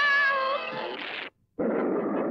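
A cartoon woman's high, drawn-out cry of "Help!", sliding up and then wavering, over a held music chord; both cut off about a second in, and after a brief silence a man's narrating voice begins.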